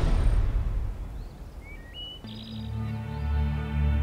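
Dramatic background music: a loud passage fades away in the first second, a few short bird chirps come through around two seconds in, then a low, sustained music swells in.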